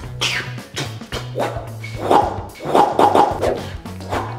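Background music with a steady, repeated low bass note and sharp percussive hits, with a few short voice-like cries over it about halfway through.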